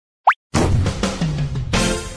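Animated intro sting: a quick rising pop-like sound effect, then a short playful music jingle with a falling tone and a new chord near the end.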